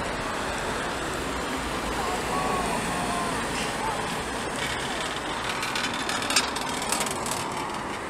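Steady road traffic noise from cars passing on a city street, with a couple of short sharp taps about six to seven seconds in.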